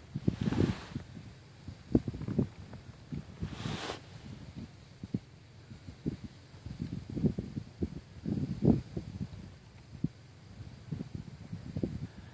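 Faint rustling and scattered low knocks, the kind of movement and handling noise made by someone holding a camera. Two brief breathy hisses come through, the first about half a second in and the second near four seconds.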